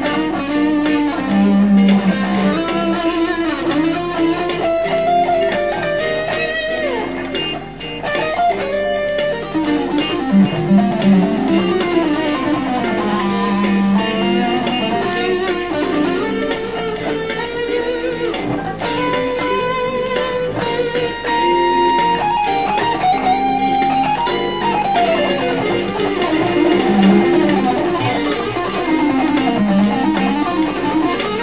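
Electric guitar with a scalloped 21-fret neck, played through an ADA MP-1 preamp and Yamaha DG Stomp, improvising fusion-rock lead lines over a backing track. The notes move quickly, with slides and bends.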